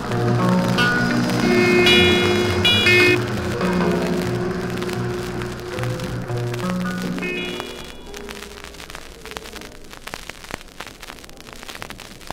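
Live calypso band playing the closing instrumental bars of a song after the singer's last line, the music ending about eight seconds in. The ending is followed by a clatter of audience applause.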